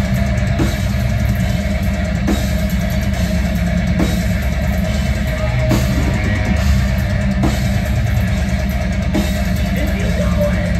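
Metalcore band playing live, heard from within the crowd: heavy distorted guitars, bass and pounding drums, with regular cymbal-crash accents a little under two seconds apart and no vocals.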